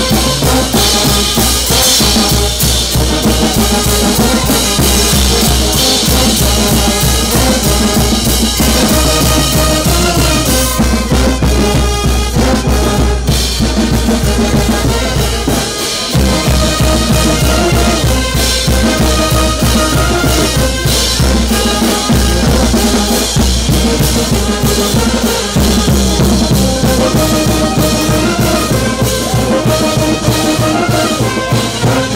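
Brass band playing live: trumpets and sousaphones over a steady beat from bass drum, snare and cymbals. The deep bass drops out for a moment about halfway, then the band carries on.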